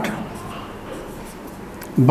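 Marker pen writing on a whiteboard: a soft, even scratching as the tip moves across the board.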